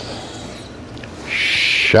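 A man's muffled laughter behind his hand, then closing music starts about one and a half seconds in.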